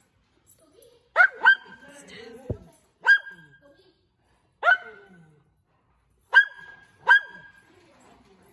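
A dog barking six times in short, sharp, high barks, some in quick pairs, with echo trailing after each. One low thump comes near the middle.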